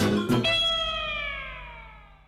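A TV segment-intro jingle: a few quick ringing notes, then one long sliding tone that falls in pitch and fades away.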